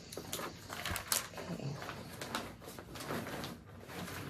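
Rustling and small clicks of things being handled and moved about at close range, in quick irregular bursts, with one short spoken word.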